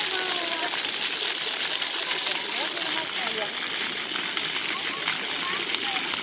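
Ground-level splash-pad fountain jets spraying and splashing onto wet paving, a steady hiss of running water.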